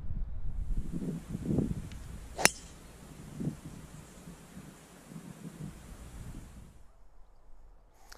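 Driver striking a golf ball off the tee: one sharp crack about two and a half seconds in.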